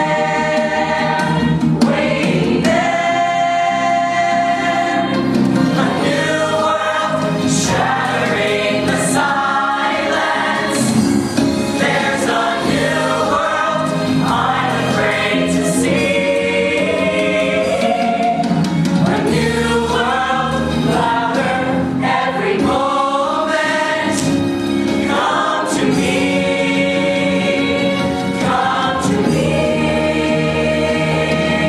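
Mixed-voice glee choir singing a musical-theatre number, many voices together in sustained chords.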